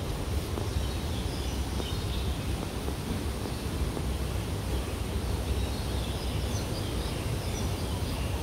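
Outdoor park ambience: a steady low rumble of wind on the phone microphone, with faint, scattered high chirps.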